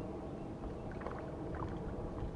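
A hooked crappie splashing faintly at the water's surface as it is reeled in, over a low steady rumble.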